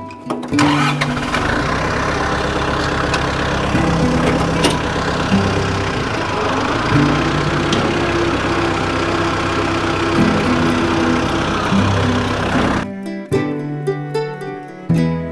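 New Holland WorkMaster 55 tractor's diesel engine starts up about half a second in and runs steadily, under acoustic guitar music. The engine sound stops suddenly near the end, leaving only the music.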